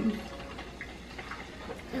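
Low, steady room tone with a few faint light ticks.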